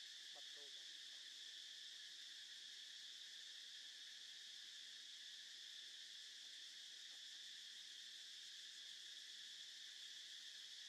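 Faint, steady chorus of insects: a constant high buzz that does not let up. Just after the start, a brief faint call is heard.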